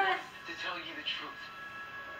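Television drama soundtrack playing in a room: faint dialogue over steady background music.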